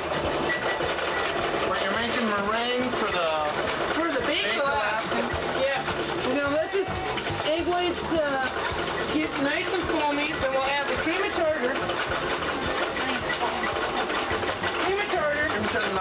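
Electric stand mixer motor running steadily, whipping egg whites into meringue, with voices talking over it.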